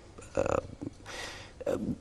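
A man's voice in a pause between phrases: a short guttural hesitation sound about half a second in, then a breathy hiss like an intake of breath, and the first murmur of his next word near the end.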